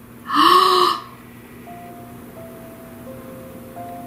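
A woman's sharp, breathy gasp about half a second in, lasting under a second. It is followed by soft background music of long, held notes that step slowly between a few pitches.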